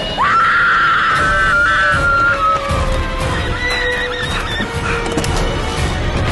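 Music: a high sustained "ahh" vocal swell that glides up sharply at the start and holds with small wavering steps for a couple of seconds, over a lower held note and low pulses.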